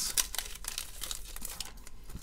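Foil trading-card pack wrapper crinkling as it is handled and the cards are slid out of it, a dense crackle in the first second that thins out toward the end.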